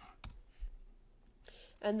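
A few sharp clicks of computer keyboard keys in the first half second, then a breath and the start of speech near the end.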